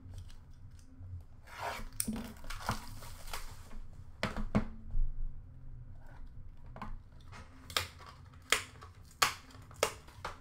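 Hands unpacking a tin of hockey cards: packaging rustling and tearing, then a string of sharp clicks and taps as the tin and cards are handled.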